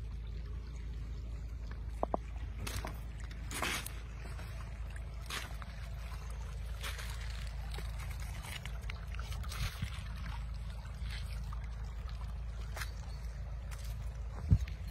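Shallow river water trickling over gravel, with irregular footsteps crunching and squelching on wet stones over a low steady rumble.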